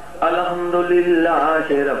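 A man's voice chanting one long, drawn-out melodic phrase into a microphone, holding its notes with a waver in pitch partway through.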